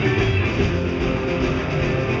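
Live rock band playing an instrumental passage, with electric guitars to the fore over a steady bass.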